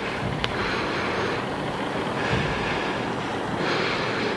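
Steady background noise, an even hiss-like rumble with no distinct tone, and one faint click about half a second in.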